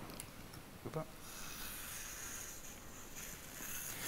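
Faint steady high hiss from dental implant surgery equipment, starting about a second in just after a brief click.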